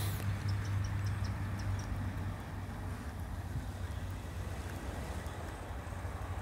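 Steady low hum over an even outdoor background noise, with a few faint, short, high ticks about a second in.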